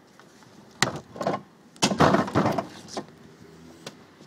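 A plastic wheeled trash can being handled: two sharp knocks about a second apart, each followed by scraping and rustling.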